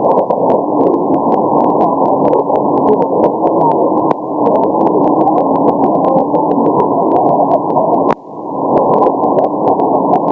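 Shortwave receiver tuned to a weak signal on 6180 kHz: steady narrow-band hiss with crackles of static and a faint wavering tone buried in it. The noise drops out briefly about four seconds in and again about eight seconds in, each time with a click.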